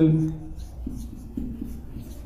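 A man's voice trails off at the start, then a marker writes on a whiteboard in a string of short strokes.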